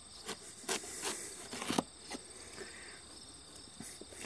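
A knife cutting into a striped watermelon's rind, giving a few short crisp cracks in the first two seconds. Insects trill steadily and faintly in the background.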